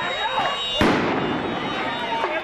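A crowd of protesters shouting over one another, with one loud, sharp bang about a second in.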